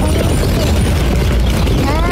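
Loud, steady low rumble on a handheld phone recording outdoors, from wind on the microphone and a queue of slow-moving cars.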